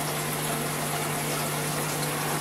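Aquarium filter pump running, with a steady low hum under the continuous hiss and bubbling of its outlet water jet and air stream.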